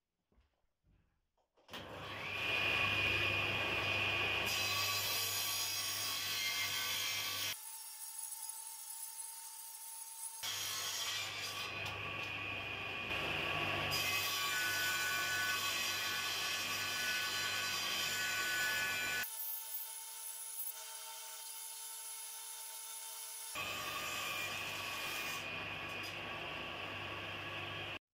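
Circular saw of a combination woodworking machine switched on about two seconds in, its motor spinning up to a steady run, then ripping lengths of wood into thin strips for splines. The sound changes abruptly several times, with the low end dropping away in two stretches.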